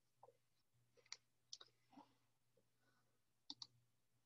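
Near silence broken by a few faint, isolated clicks, with a quick pair near the end, over a faint steady low hum.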